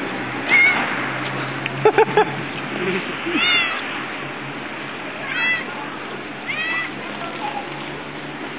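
Young tabby cat meowing four times, each short high meow rising and then falling in pitch.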